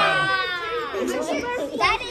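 Excited children's voices overlapping, opening with a high-pitched exclamation that slides down in pitch, with a short bump near the end.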